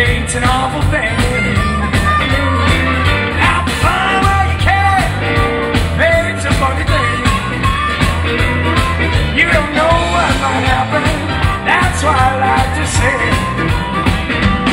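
Electric blues band playing a shuffle live: electric guitar, electric bass and a drum kit, with lead lines that bend in pitch over the steady rhythm.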